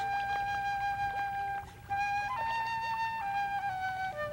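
Background music of a solo flute playing slow, long held notes, with a brief break about halfway through.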